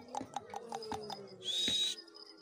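A Kota goat biting and tearing at grass on the ground, a quick run of crisp clicks about six a second. A low steady hum runs under the middle, and a short loud hiss with a rising whistle comes near the end.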